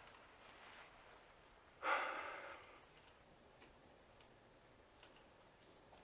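A single short breathy sigh about two seconds in, fading out over half a second, then a quiet stretch with a few faint ticks.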